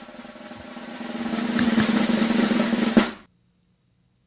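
Suspense snare drum roll sound effect, building in loudness for about three seconds and ending in a single sharp hit before cutting off: the build-up to a reveal.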